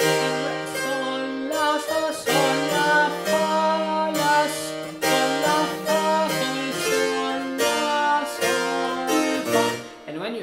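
A harpsichord played in several voices, realizing a partimento bass: a steady run of plucked chords over a moving bass line. It stops just before the end.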